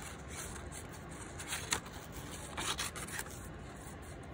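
Small craft scissors cutting paper along a drawn outline: a few short, separate snips with the soft rustle of the paper being turned.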